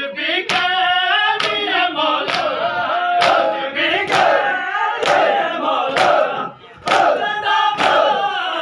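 Men chanting a lament together in unison while beating their chests in matam, a sharp hand-on-chest slap landing in time about once a second, nine strokes in all. The chant pauses briefly two-thirds of the way through, between strokes.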